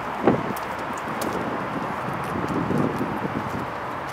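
Wind noise on the microphone with light rustling and scattered faint clicks. A short clunk about a third of a second in, as the pickup's driver door is unlatched and pulled open.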